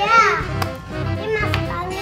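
A young child's high-pitched voice calling out in sing-song, swooping bursts during play, over background music with a steady beat.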